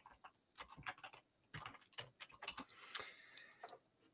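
Faint, irregular clicking of a computer keyboard and mouse, a dozen or so light taps, the loudest about three seconds in.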